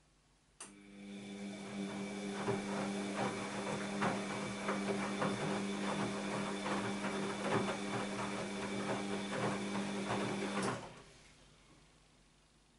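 Bosch WAB28220 washing machine's drum motor turning the wet load during the wash. The motor hum and whine start suddenly about half a second in, with the laundry tumbling in irregular knocks, and stop about a second before the end.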